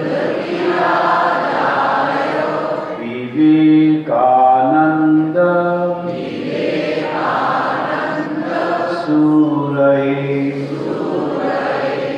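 A man chanting a devotional Sanskrit hymn (stotra) in a slow melody of long held notes, stepping between a few pitches every second or two.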